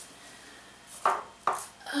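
Two short knocks about half a second apart as a small vintage ceramic apple-shaped toothpick holder is lifted off a wooden shelf.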